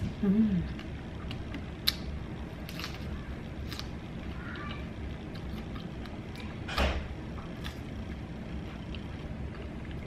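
A strawberry topped with canned whipped cream being eaten: quiet chewing with scattered soft mouth clicks and one louder bite or smack about seven seconds in.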